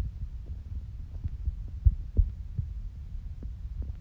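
Low, irregular thumps over a steady low rumble, with a few faint clicks: handling noise close to a phone microphone.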